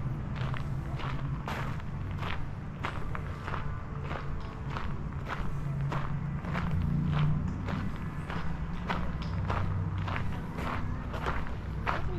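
Footsteps of a person walking at a steady pace on an outdoor path, about two steps a second, over a steady low rumble.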